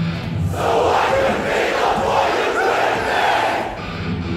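Large concert crowd shouting loudly together in a break in the hardcore band's music. The band cuts out shortly after the start and comes back in at the end.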